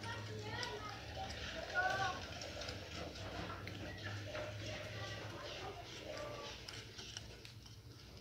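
Indistinct voices talking in the background, some of them high-pitched, over a steady low hum, with a few faint clicks.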